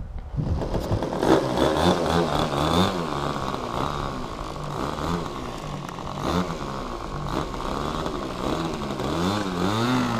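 Small two-stroke model-airplane engine coming up to power about a third of a second in, then running with a buzzing note whose pitch wavers up and down as the throttle is worked while the plane is on the ground.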